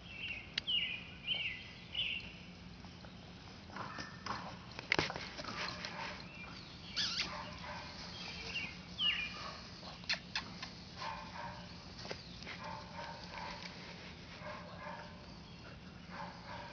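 English Setter puppy at play: a few short, high squeaks near the start and again about nine seconds in, with scattered knocks and scuffles between them.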